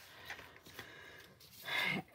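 Faint handling noise as vellum and card pieces are moved about on a craft mat, with a few light taps, then a short louder hiss near the end.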